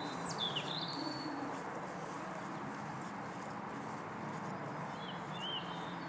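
Faint outdoor background with a few brief bird chirps, a couple at the start and another pair about five seconds in.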